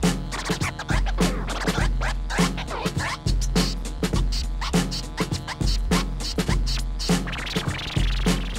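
Vinyl scratching on a Technics turntable: the record is pushed back and forth under the stylus in quick strokes, chopped by the mixer's crossfader, making short sweeping pitch cuts. Under it runs a hip-hop beat with a deep bass line and evenly paced drum hits.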